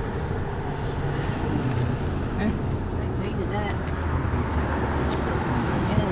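Steady road and engine hum of a Dodge car driving, heard from inside the cabin.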